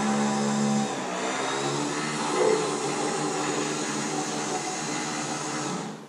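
Electric motor of an Escalera stair-climbing dolly running under the load of a roughly 600-lb gun safe on the stairs: a steady, even hum that starts abruptly and cuts off just before the end.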